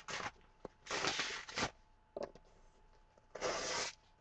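Sheets of paper and cardstock handled and pulled apart by hand: four short bursts of paper noise, the longest about a second in and another near the end.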